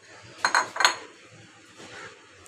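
Kitchen crockery clinking: two sharp clinks with a brief ring, a few tenths of a second apart, as a bowl is handled on the counter.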